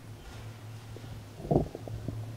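Microphone handling noise over the PA: a loud low thump about one and a half seconds in, followed by a few smaller knocks, as the microphone is taken off its stand, heard over a steady low hum.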